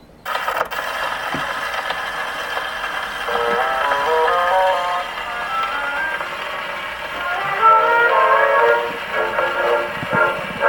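A Pathé vertical-groove 78 rpm record playing on a phonograph: the recording's instrumental introduction starts suddenly about a third of a second in, a stepping melody over a steady hiss of surface noise.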